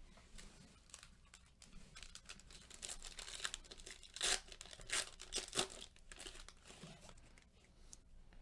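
Foil wrapper of a Panini Mosaic basketball card pack being torn open and crinkled by gloved hands: irregular crinkling with a few sharper rips around the middle.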